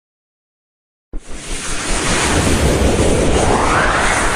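Swooshing noise sound effect of an animated logo intro: it starts suddenly about a second in and rises in pitch as it builds.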